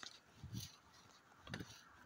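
Near silence in a pause between spoken sentences, with two brief faint low sounds about half a second and a second and a half in.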